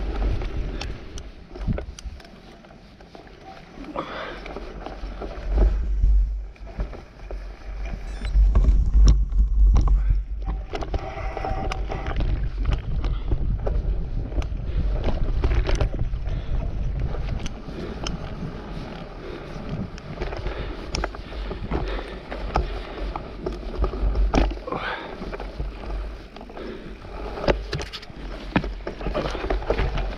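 Mountain bike rolling over a rough gravel and stony trail, with wind buffeting the microphone and frequent knocks and rattles from the bike over the bumps; the wind rumble swells loudest about a third of the way in.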